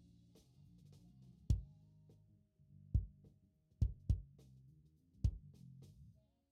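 Kick drum track from a live band recording playing back on its own through an SSL E-series channel-strip EQ, with low end boosted and extra high-end click added. There are five punchy kick hits at uneven spacing, with quieter low stage bleed from the other instruments sustaining between them.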